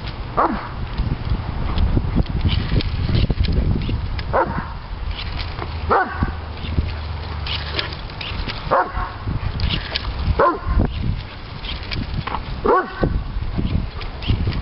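Doberman Pinscher barking in high-pitched, yelping barks from excitement over bubbles. There are about six barks one to two seconds apart, each dropping in pitch.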